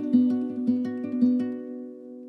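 Nylon-string classical guitar fingerpicked in a steady repeating pattern of about five notes a second over a low note, then stopping about three quarters of the way through and leaving the last chord ringing and fading: the close of the song.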